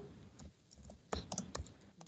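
Computer keyboard typing: a handful of faint, quick keystrokes, most of them bunched together in the second second.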